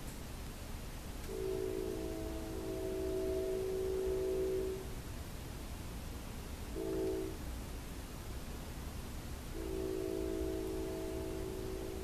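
A train horn sounding a chord of several steady notes, fairly quiet: a long blast, a short blast, then another long blast.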